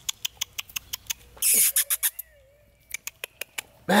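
Rapid sharp clicks, about five or six a second, of a person clicking their tongue to call a puppy. They are broken about a second and a half in by a short hiss, then a faint thin wavering tone, before a last run of clicks.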